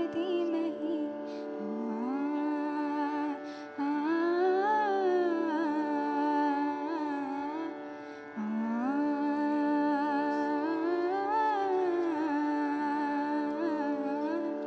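A woman singing a slow, wordless Indian classical-style vocal line over a steady drone. The line comes in two long phrases, each sliding up and then held with wavering ornaments, the second beginning about eight seconds in.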